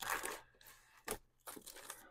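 Plastic DVD cases rustling and scraping against one another as a case is slid into a packed shelf and the next one is handled, with a short click about a second in.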